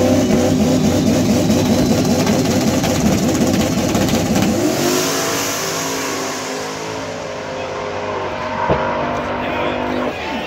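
Buick Grand National drag car launching and accelerating hard down the strip, its engine revving. The pitch drops and climbs again at a gear change about four and a half seconds in, and the engine fades as the car pulls away.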